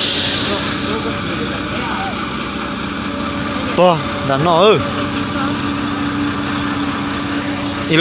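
Heavy truck engine running steadily at low revs, a low even hum, with a hiss fading out in the first second.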